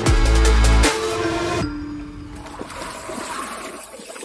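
A loud, deep musical hit with ringing tones that fade over about a second and a half. Then a steady rushing noise of wind and tyres from a mountain bike rolling down a dirt trail, heard on a helmet camera.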